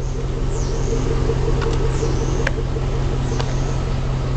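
A steady low mechanical hum with a faint regular pulsing, joined by a few faint high chirps and one sharp click about two and a half seconds in.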